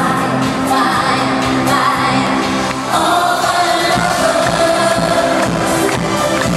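Live pop music from a large arena: a female singer with a full band, heard from within the crowd. The arrangement shifts about three seconds in.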